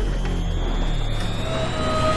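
A low, steady engine-like rumble with a faint whine slowly rising in pitch; a second, clearer tone comes in about one and a half seconds in and climbs slightly.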